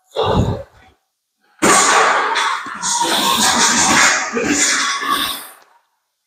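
Velcro wrist straps of boxing gloves being torn open and pressed shut, a rough rip lasting about four seconds, after a short knock in the first second.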